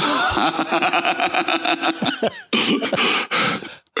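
Two men laughing: a long, pulsing burst of laughter for about two seconds, then a second, shorter burst.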